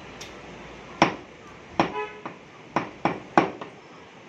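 Heavy cleaver chopping raw chicken on a thick wooden chopping block: about five sharp, irregularly spaced chops with a few lighter knocks between them, the first loud one about a second in.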